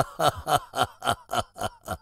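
A man's loud, hearty laugh: a long run of evenly paced "ha" pulses, about three or four a second, fading toward the end.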